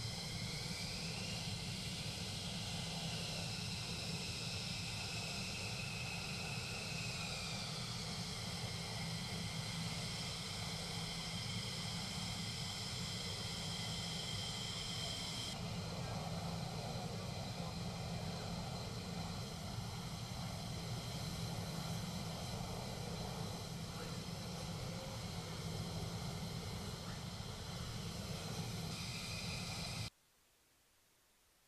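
F-15E Strike Eagle twin jet engines running at taxi power: a steady rush under a high turbine whine that rises and then falls in pitch over the first several seconds. The whine changes abruptly about halfway through.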